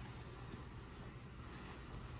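Quiet room tone with a steady low hum; no distinct sound stands out.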